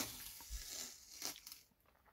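Faint crinkling and tearing of masking tape being peeled from the edges of a painted board, with a few small clicks, dying away shortly before the end.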